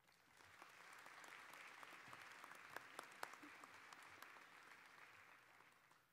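Audience applauding, faint, swelling over the first second and dying away near the end, with a few single claps standing out.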